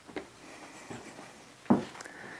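Footsteps on the wooden floorboards of a barn attic: a few dull knocks, about one every 0.8 s, the heaviest near the end.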